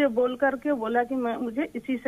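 Only speech: a caller's voice over a telephone line, talking without pause, sounding thin and narrow.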